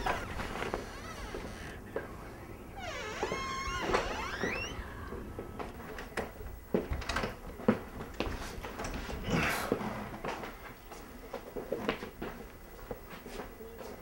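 Scattered knocks and clicks of people moving about a small room, with a wavering, high-pitched vocal sound that rises and falls about three to five seconds in.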